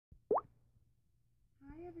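A single short, rising 'bloop' about a third of a second in, then near silence. Near the end a woman's voice begins a drawn-out greeting.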